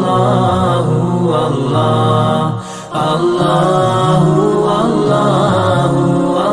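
Devotional dhikr chant: voices repeating "Allahu, Allah" in a slow sung line, with a brief break near the middle.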